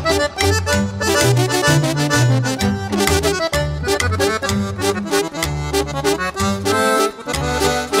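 Norteño band instrumental break: an accordion plays the melody over a held bass line and a steady strummed rhythm.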